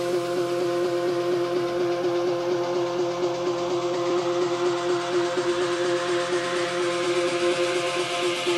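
Electronic dance music in a breakdown: the bass and kick drum have dropped out, a synth chord is held, and a noise sweep rises steadily through it, building toward the next drop.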